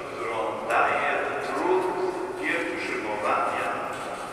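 Speech: a man talking, his voice sounding through loudspeakers in a large, reverberant church.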